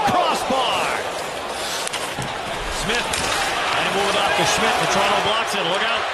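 Arena crowd noise at an ice hockey game, with scattered sharp knocks of sticks and puck on the ice and boards.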